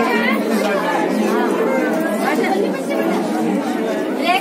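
Crowd chatter: many people talking at once, their voices overlapping continuously.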